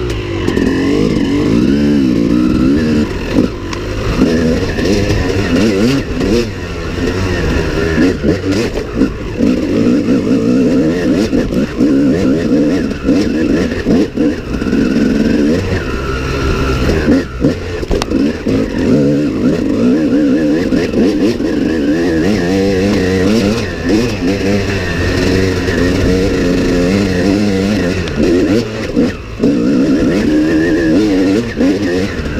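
Dirt bike engine recorded close up from on board, its pitch rising and falling continually as the rider opens and closes the throttle along the trail.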